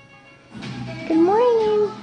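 A young child's voice: one drawn-out, high-pitched call about a second in that rises and then falls in pitch, not a clear word. A television plays faintly underneath.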